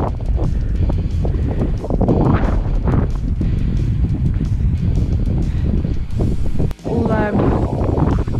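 Wind buffeting the camera microphone in a heavy, uneven rumble, with scattered crunching ticks. About seven seconds in, a short run of rising pitched notes.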